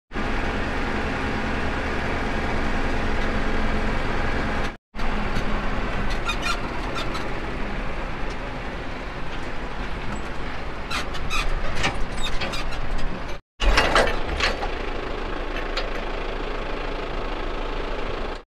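Tractor engine running steadily, heard from inside the cab, with a few light rattles and clicks. The sound drops out briefly twice.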